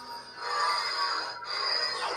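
Proffie-board neopixel lightsaber playing its Darksaber sound font: a steady electronic hum that swells into louder swing sounds as the blade is swung from about half a second in, with a brief dip near the middle.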